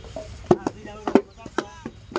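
Wooden brick moulds knocking and thudding on the ground as clay bricks are hand-moulded: a handful of sharp knocks, bunched in the middle, two of them coming in quick pairs.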